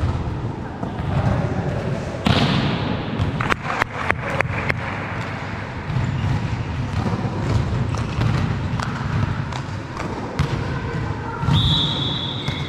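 Volleyball play in a large echoing sports hall: a loud sharp ball strike about two seconds in, then a quick run of sharp ball bounces on the court floor. Players' footsteps and scattered voices fill the rest, with a short high-pitched tone near the end.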